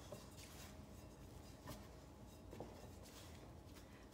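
Faint, soft scraping of a silicone spatula stirring damp pie crust dough in a mixing bowl, with a couple of slightly louder strokes partway through.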